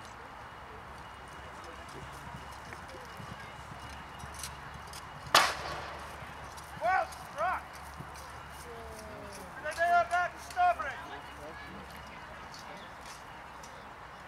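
A horse ridden down a jousting lane, with faint hoofbeats. There is a single sharp crack about five seconds in, then two short high calls and, near ten seconds, a quick run of high wavering calls.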